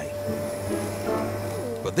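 Cylinder vacuum cleaner running steadily, a constant hum with a steady tone, as its floor head is worked over carpet.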